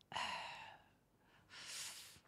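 A man sighing into a close microphone, then a quieter breath in about a second and a half later.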